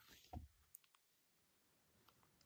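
Faint handling of a paper insert and a plastic Blu-ray case: a few soft clicks and a light tap in the first second, then near silence.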